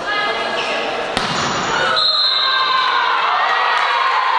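Volleyball players shouting to each other during a rally in a gymnasium hall, with a sharp smack of the ball about a second in. From halfway through, long held shouts and cheers as the point is won.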